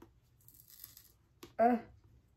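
A sticker being peeled off a book's cover: one short tearing sound about half a second in. A brief annoyed 'ugh' follows near the end.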